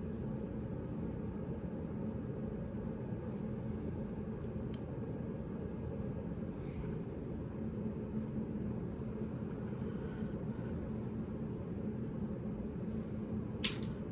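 Steady low hum of room noise in a small room, with no distinct events.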